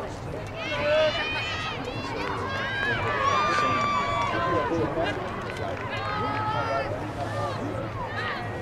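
Several high-pitched voices shouting and cheering in overlapping calls, with one long held shout in the middle, over a low steady hum.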